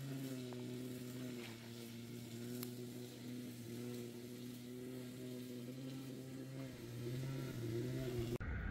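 A motor running with a steady low hum. It rises slightly in pitch about seven seconds in.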